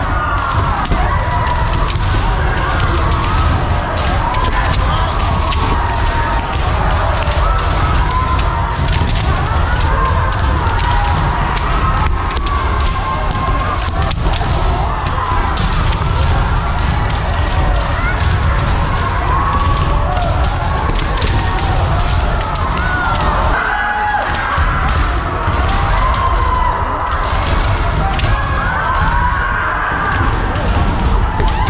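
A hall full of kendo practice: bamboo shinai striking armour, bare feet stamping on the wooden floor, and many kendoka shouting kiai, all overlapping without a break.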